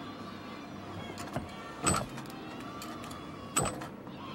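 A gymnast's feet landing on a balance beam, two sharp thuds about a second and a half apart with a few lighter taps before them, over a steady arena crowd murmur.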